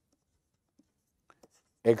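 A few faint taps and scratches of a stylus writing on a tablet screen, with near silence between them.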